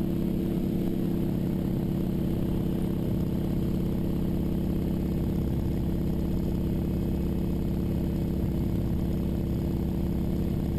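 North American AT-6D's Pratt & Whitney R-1340 Wasp radial engine and propeller running steadily in flight, heard from inside the cockpit as an even, unchanging drone.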